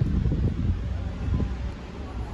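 Wind buffeting the microphone: a low, uneven rumble, with some faint rustling.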